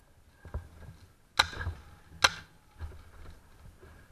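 Two sharp pops of a paintball marker firing, just under a second apart, with fainter knocks and soft low thuds around them.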